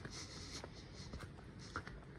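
Faint footsteps on a paved pavement, a few soft steps about half a second apart, over quiet outdoor background noise.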